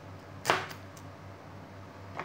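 A knife chopping through firm pale produce onto a plastic cutting board: one sharp knock about half a second in, then a couple of faint taps.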